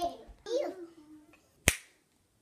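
A toddler's short vocal sound with a falling pitch, then a single sharp click about three-quarters of the way through, after which the sound cuts to dead silence.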